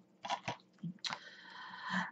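Plastic DVD case being handled: a few short clicks and rustles, then a longer, softer rustle that grows near the end.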